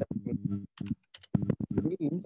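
Short, broken-up bits of a man's speech over a video call, cut by abrupt gaps, with a run of sharp clicks scattered through.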